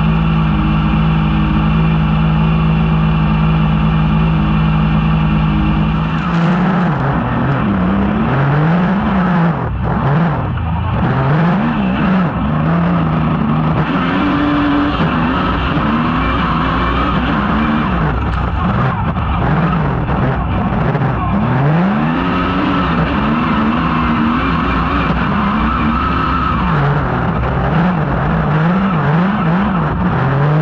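Rallycross buggy engine heard from on board: idling steadily, then about six seconds in revving hard as the car pulls away, the pitch rising and dropping again and again through the gear changes.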